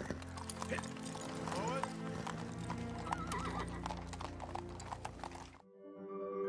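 A horse's hooves clopping, with a horse whinnying in a wavering call, over film score music. The sound cuts off shortly before the end, and chiming music begins.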